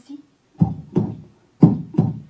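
A storyteller making a heartbeat rhythm: four low thumps in two pairs, boum-boum, boum-boum, about a second apart.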